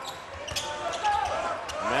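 Basketball dribbled and bouncing on a hardwood court during live play, several sharp bounces over the steady noise of an arena crowd.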